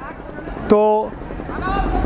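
A man says a single short word in Hindi, between pauses. Under it, a low rumble swells toward the end.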